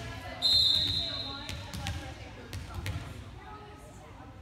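Referee's whistle, one steady high blast of a little over a second, the signal for the serve, then a volleyball bounced on the wooden gym floor about four times as the server readies. Voices chatter in the echoing gym.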